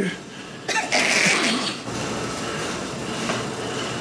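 A person's sudden, loud, breathy burst of the voice about a second in, lasting about a second.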